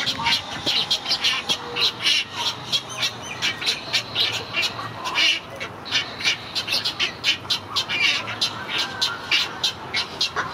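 Great egret chicks begging at the nest: a rapid run of sharp, chattering calls, about four or five a second, going on steadily while they crowd the parent for food.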